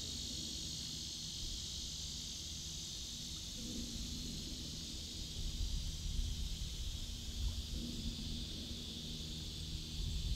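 Distant American alligator bellowing, a low growl that comes twice, about four seconds apart, over a steady insect buzz. It is a territorial bellow, the sign of an agitated alligator.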